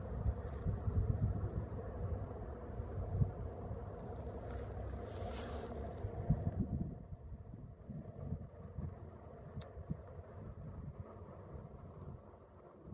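Wind buffeting the microphone: an uneven low rumble, heavier for the first six seconds or so, with a brief hissing gust in the middle, then easing.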